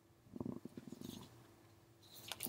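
Quiet speech: a man's low, drawn-out, rattly 'yeah' about half a second in, over a faint steady hum.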